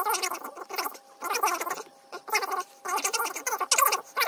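A small animal calling in repeated bursts, each lasting about a third of a second to a second, with short gaps between them.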